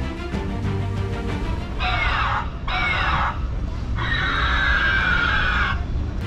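Background music with three screeching dinosaur-like calls over it: two short ones about two seconds in, then a longer one whose pitch slowly falls.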